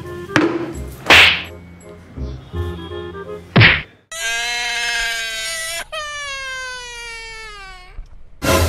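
Comedy sound effects: two sharp, loud whacks about a second apart, over light background music, then a long held tone that slides slowly downward in pitch.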